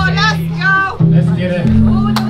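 Boom bap hip hop track playing loud over a sound system: a deep bass line held in long notes, with vocals over it.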